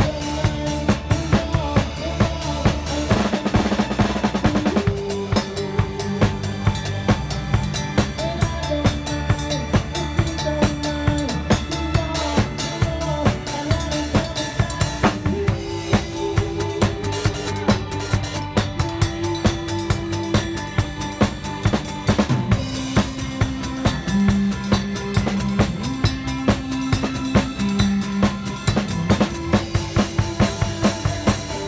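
Drum kit played in a steady groove, with evenly repeating snare and bass drum hits, over a pitched backing track of a song.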